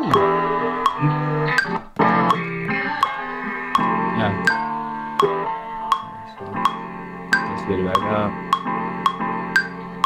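A chopped guitar-led music sample playing back from an Ableton Push 3, time-stretched by Ableton's warping so it stays in time as the tempo is turned up. Short, regular clicks tick over it about three times a second.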